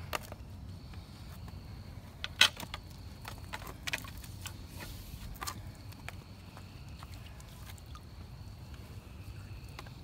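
Scattered clicks and knocks, the sharpest about two and a half seconds in, over a steady low rumble, from stepping and handling the camera among wet rocks in a shallow pond. A faint steady high whine sits underneath.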